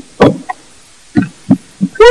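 Short bursts of laughter, about five separate soft bursts spread across two seconds.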